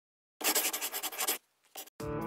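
Felt-tip marker drawing on paper: about a second of quick scratchy strokes, a brief pause, then one short stroke.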